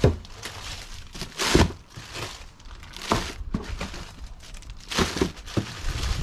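Plastic bags crinkling and rustling as frozen, still-hard milkfish are handled in a cardboard box, with several sharp knocks of the hard fish against each other and the box.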